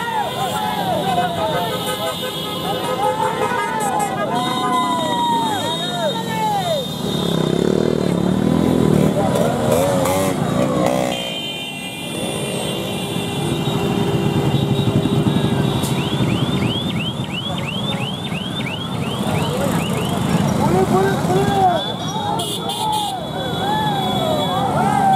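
A slow procession of many motorcycles and scooters riding past, engines running under a crowd of people shouting, with horns sounding. About two-thirds through there is a quick run of repeated high chirps.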